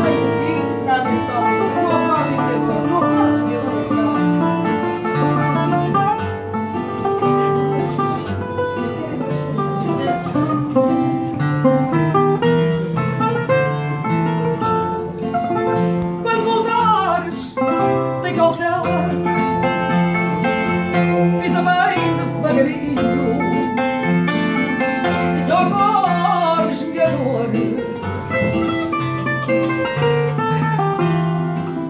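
Portuguese guitar and classical guitar playing a fado together, the Portuguese guitar picking a melody over the guitar's plucked bass and chords.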